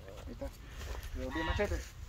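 A domestic goose giving one drawn-out call, a little over half a second long, about a second and a quarter in.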